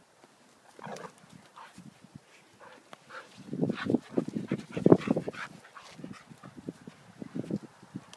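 Two dogs play-wrestling, making dog noises in a run of short, loud bursts through the middle, with fainter bursts before and after.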